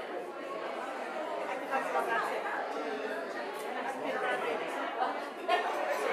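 A church congregation greeting one another, many voices talking at once and overlapping in a large, echoing sanctuary.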